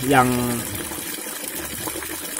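A stream of tap water pouring steadily into a tub of standing water, splashing and bubbling as the tub is refilled.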